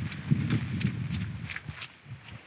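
Hurried footsteps on a grassy riverbank: irregular dull thuds, two or three a second, with crackling rustles close to the microphone.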